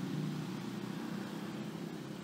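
A steady low hum with a soft, even hiss: constant background noise.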